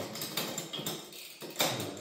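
A series of light metallic clicks and knocks as a torque wrench is worked on a bicycle's crankset, with the chain and drivetrain under the load of the rear derailleur's clutch. The loudest knock comes about one and a half seconds in.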